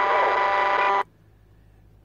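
CB radio speaker carrying a strong incoming transmission: a loud buzzing signal made of several steady tones with a few sliding whistles through it, which cuts off abruptly about a second in and leaves faint hiss.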